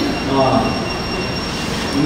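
A brief word from a man's voice, then a pause filled with steady hiss and a thin, steady high whine.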